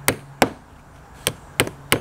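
Claw hammer driving nails through a foam pool noodle into the edge of a wooden board: five sharp strikes, two in quick succession, then a pause, then three more evenly spaced.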